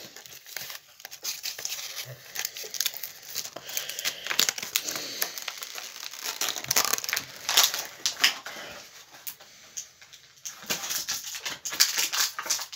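Small plastic toy packaging being handled and opened by hand: a run of irregular crackles and rustles that thins out briefly near the end.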